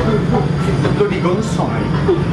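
Indistinct voices of several people talking over a steady low hum.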